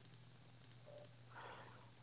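Near silence with a few faint mouse clicks in the first second.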